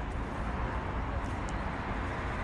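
Steady outdoor city ambience: a low, even rumble of distant road traffic.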